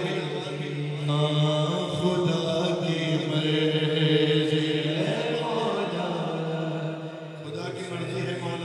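A man's voice reciting an Urdu manqabat, a devotional poem, in a chanted, melodic style into a microphone, holding long notes. About five seconds in, a note sweeps upward.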